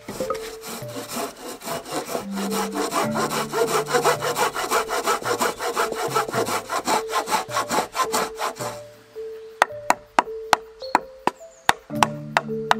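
Folding hand saw cutting across a fresh-cut larch pole in quick, even strokes, stopping about nine seconds in. Then a quick run of sharp knocks as a short knife chops out the wood in the notch. Background music with held notes plays underneath.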